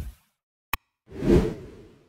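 Animation sound effects: a whoosh fading out, a single sharp mouse click, then another whoosh that swells and fades away over about a second.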